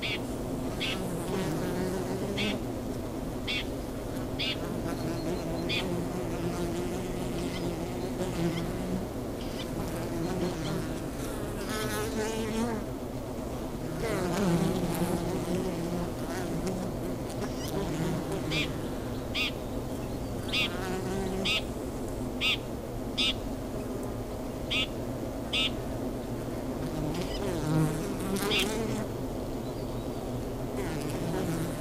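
Honey bees buzzing around wooden hives: a steady low hum, with single bees droning past, their pitch wavering up and down. Short high chirps recur over the hum, more often in the second half.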